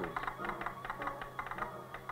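Faint, irregular rapid clicking over a steady low hum on an old film soundtrack.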